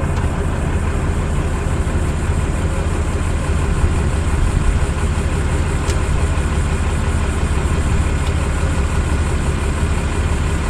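An engine idling steadily, a low, even drone, with a faint click about six seconds in.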